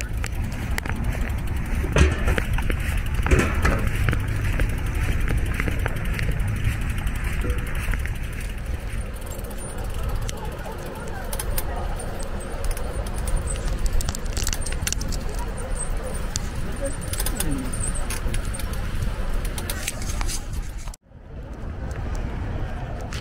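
Outdoor ambience picked up by a walking handheld camera: a steady low rumble of noise with scattered clicks and faint voices, broken by a brief dropout near the end.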